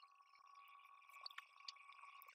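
Near silence: room tone, with a few faint short ticks a little past the middle.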